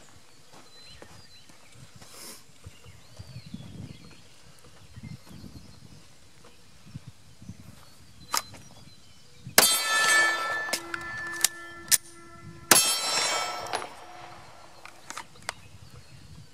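A 9mm Glock 48 pistol firing a string of about six shots over some four to five seconds, starting about eight seconds in after a draw from the holster. The two loudest shots are followed by a metallic ringing that carries on between the shots.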